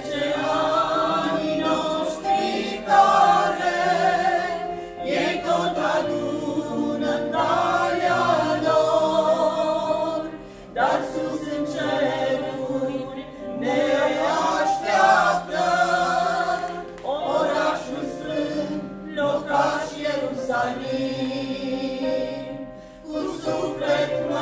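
Mixed choir of women and men singing a Romanian Pentecostal hymn, with a brief break between sung lines about ten seconds in and again near the end.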